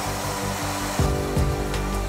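Marx tin-lithograph O gauge diesel locomotive running on three-rail track: a steady electric-motor whir with wheel noise, and light clicks from about a second in as the train passes close.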